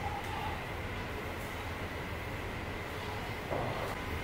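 Steady low rumble of background ambience, with a faint steady high hum over it.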